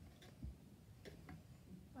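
A few faint ticks and a soft knock, about half a second in, of plastic LEGO pieces and a minifigure being set down on a wooden tabletop.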